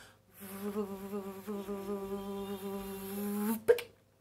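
A woman's voice holding one long, steady note for about three seconds, followed by a single sharp click near the end.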